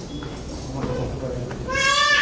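Crowd murmur, then near the end a loud high-pitched call from a child's voice, falling slightly in pitch.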